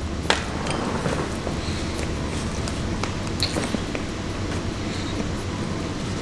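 A bite into a soft, crumbly brownie about a third of a second in, then quiet chewing with small mouth clicks over a steady low room hum.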